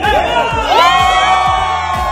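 A crowd of people cheering together, rising into one long held shout under a second in, over music with a steady beat.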